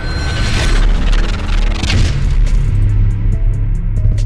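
Trap-style music with heavy bass under a logo sting: booming hits and rushing whooshes in the first couple of seconds, then a beat with evenly spaced hi-hat ticks from about three seconds in.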